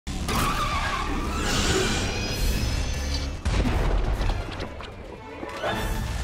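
Cartoon action-scene soundtrack: music mixed with crash and impact sound effects, with a heavy boom about three and a half seconds in.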